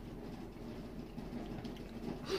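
Quiet room tone: a faint steady low hum with no distinct sound events.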